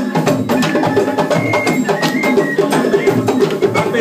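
Live hand-drum ensemble playing a fast, busy rhythm, with dense overlapping drum strokes and a few short high ringing tones over them.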